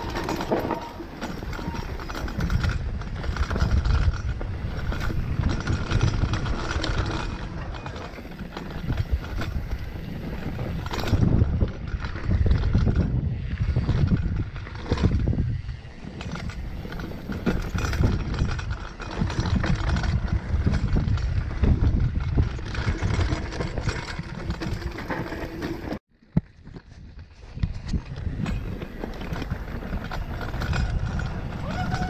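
Mountain bike ridden downhill on a rough dirt forest trail, heard from a camera on the rider: a loud, uneven rumble of tyres over dirt, roots and stones, with frequent knocks and rattles from the bike and wind buffeting the microphone. The sound cuts out briefly about four seconds before the end.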